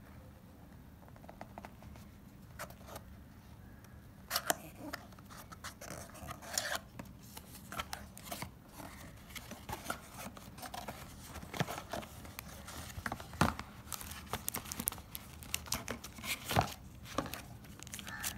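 Unboxing handling noise: a clear plastic tape seal being peeled off a cardboard box and the box being opened, with a scattered run of small clicks, rustles and tearing scrapes of cardboard and plastic starting about four seconds in.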